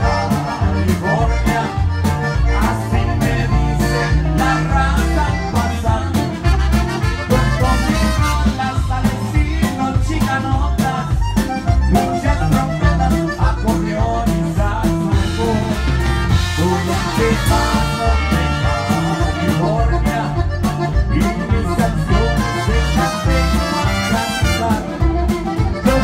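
A live conjunto-style band playing with a steady beat, a button accordion leading over trumpet, a bass horn and drums, with a man singing; a sung "oh, oh" comes a little past halfway.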